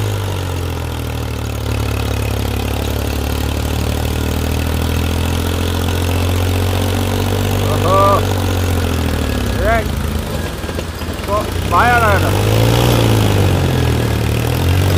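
Two Mahindra tractors' diesel engines, a 575 and a 265 DI, labouring under heavy load as they pull against each other in a tug-of-war, running steadily with a slowly wavering pitch. Onlookers shout briefly a few times in the second half.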